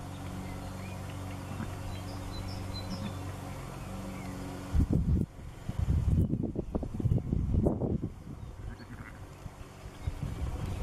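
A ewe making low, rough, pulsing calls to her newborn lambs, in several loud bursts through the second half, over a steady low hum. Faint birdsong early on.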